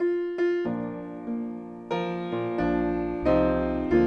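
Piano starting the introduction to a hymn: it comes in suddenly with a series of sustained chords struck every half second to a second, with deeper bass notes joining about halfway through.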